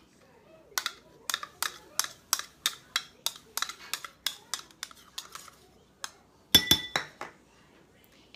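A table knife scraping sour cream out of a measuring cup into a glass bowl, clicking against the cup and bowl rim about three times a second. Near the end comes a louder clatter with a short ringing clink of the glass bowl.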